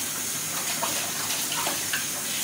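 Kitchen faucet running steadily into a stainless steel sink while a bowl is rinsed under the stream.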